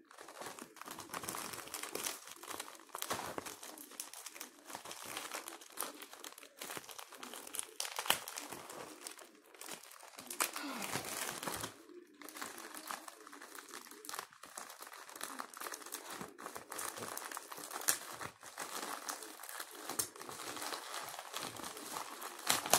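A plastic mailer bag crinkling and crackling continuously as it is handled and pulled open by hand.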